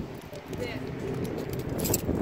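A man talking, with a brief high clatter near the end.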